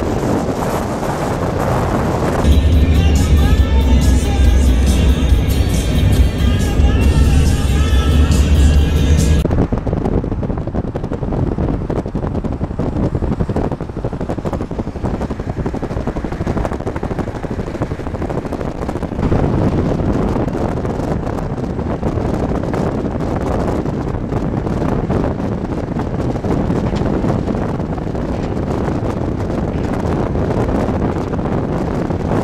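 Steady road and wind noise of a moving vehicle travelling at highway speed. From about two seconds in to about nine seconds in, loud music with heavy bass and a voice plays over it, then cuts off suddenly.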